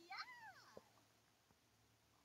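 A cat meowing once, faint and brief, its pitch rising then falling.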